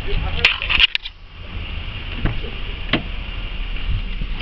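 A few sharp clicks and knocks from a 2003 Chevy Impala's driver's door, its handle and latch worked as the door is opened and someone gets in, over a low rumble.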